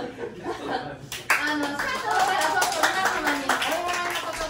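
A small audience clapping, starting about a second in, with voices talking over the applause.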